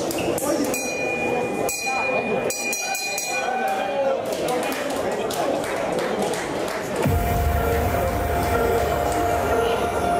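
Crowd chatter and voices echoing in a large hall, with a few light clinks early on. About seven seconds in, loud music with a heavy bass starts up and runs under the crowd.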